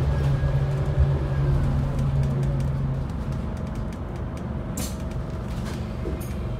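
Onboard sound of a compressed-biogas Scania N280UD double-decker bus on the move: its five-cylinder gas engine drones steadily under road rumble and body rattles, then drops to a lower, quieter note about halfway through as the bus eases off. A short hiss of air comes near the end.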